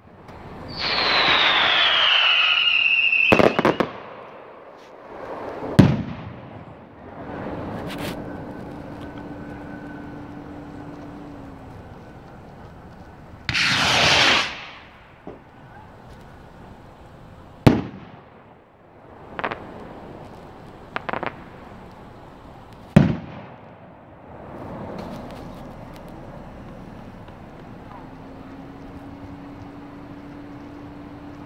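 Homemade fireworks rockets going off. The first rises with a loud rushing whistle that falls in pitch over about three seconds, and a second whooshes up about fourteen seconds in. About five sharp bangs come between them and after.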